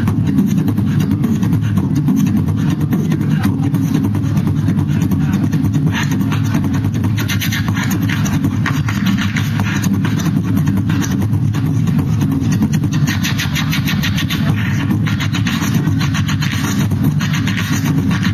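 Human beatboxing into a handheld microphone: a steady, deep buzzing bass held throughout, with rapid clicks and hisses layered on top.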